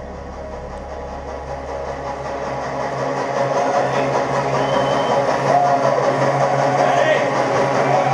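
Between songs at a live rock show: a low held note from the PA dies away over the first few seconds while a steady low hum comes in and crowd noise with scattered shouts grows louder towards the end.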